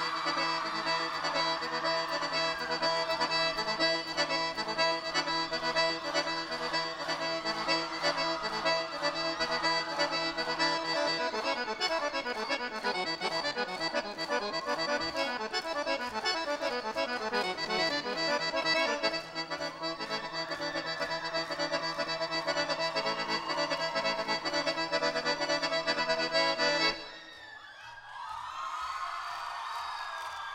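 Piano accordion playing a fast instrumental passage over a band with a steady beat, with falling runs in the middle. The music stops suddenly about three seconds before the end, and crowd noise follows.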